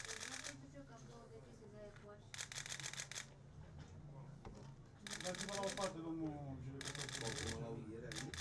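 Camera shutters firing in rapid bursts, four bursts of quick clicking, with voices murmuring in the background.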